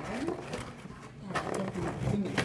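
A child's voice making wordless sounds: a rising hum near the start, then a lower, drawn-out growl-like sound in the second half.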